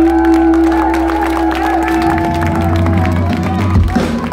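Live band music with a long held note that gives way about halfway through, while the audience cheers and claps along.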